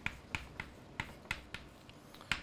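Chalk tapping and scraping against a blackboard while a word is written by hand: a string of about seven short, sharp clicks, irregular, roughly three to four a second.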